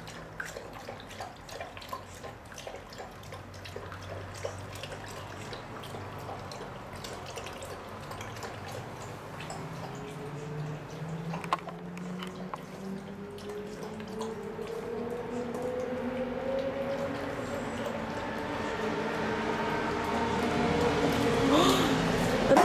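A dog lapping and splashing water in a small plastic container, with many short wet clicks and drips. Through the second half a drawn-out tone rises slowly in pitch and grows louder.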